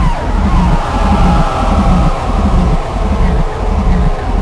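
Harsh electronic music from a speedcore track: distorted bass pulsing in a steady rhythm under a long held synth tone that slowly sinks in pitch.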